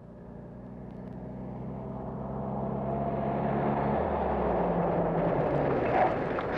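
GAZ-69 jeep's four-cylinder petrol engine running as it drives up a dirt road, growing steadily louder as it comes closer, with tyre and road noise. Its note drops a little about four seconds in as it slows.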